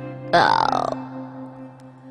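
Soft instrumental backing music, cut across about a third of a second in by a loud, short vocal sound close to the microphone whose pitch falls over about half a second.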